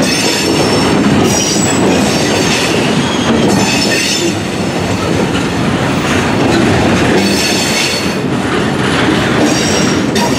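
Freight train of gondola cars rolling past close by: a steady rumble and rattle of steel wheels on rail, with high-pitched wheel squeal coming and going several times.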